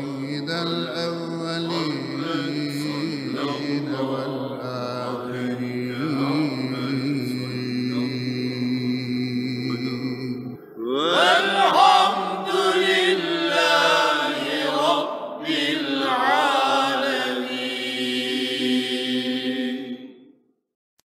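Islamic religious chanting: a melismatic vocal line over a steady low drone. About halfway through the drone stops and the chant carries on alone with rising slides.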